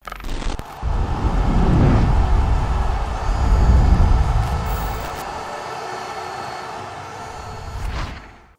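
Channel intro sting: music with a deep, rumbling bass that starts suddenly, is loudest in the first four seconds, then fades away.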